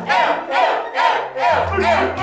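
A group of young voices shouting together in a steady rhythm, about two shouts a second, over a music track with a pulsing bass line.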